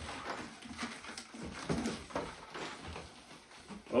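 Scattered rustles and light knocks from packaged tennis grips and string reels being handled in and around a cardboard box.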